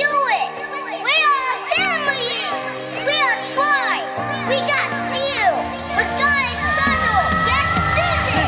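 Children yelling in short cries that rise and fall in pitch, one after another, over held music chords.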